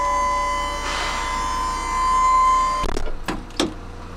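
The powered rear ramp door of a Pindad Anoa armoured personnel carrier closing: a steady, high-pitched whine from its hydraulic pump runs, then cuts off suddenly just before three seconds in. Three heavy metallic clunks follow as the ramp shuts and latches.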